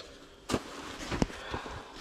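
Close handling noise: two sharp clicks about three-quarters of a second apart over a steady rustling hiss.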